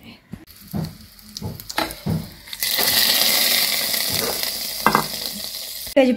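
A few soft knocks, then a steady hiss that starts suddenly about two and a half seconds in and fades slowly over the next three seconds.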